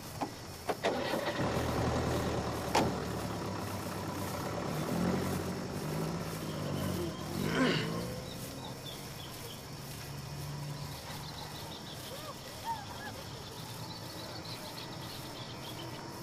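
A vehicle engine, most likely the pickup truck's, starts about a second in after a couple of clicks and runs with a low rumble. It rises in pitch as it pulls away between about five and eight seconds, then fades. Faint short chirps are heard in the second half.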